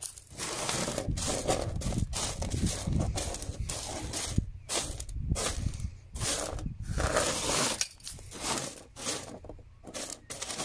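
Fingers raking and pushing wet, washed sapphire gravel across a flat sorting table, the small stones scraping and rattling against the surface in short, irregular strokes. This is the hand-sorting stage of the wash, where the gravel is searched for sapphires.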